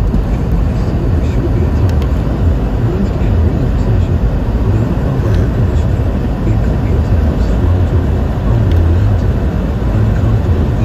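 Road noise of a car driving at highway speed: a steady low rumble of tyres and engine.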